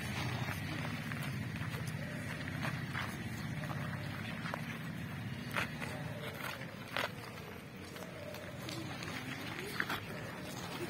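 Quiet outdoor background: a steady low hum with faint distant voices, and two sharp clicks about five and a half and seven seconds in.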